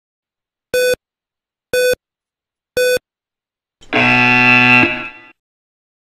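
Yo-Yo intermittent recovery test audio signal: three short electronic beeps a second apart count down the end of the recovery period. A longer, louder multi-note tone follows, lasting about a second and a half, and signals the start of the next 20 m shuttle run.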